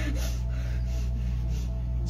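A steady low hum with a faint, breathy hiss above it.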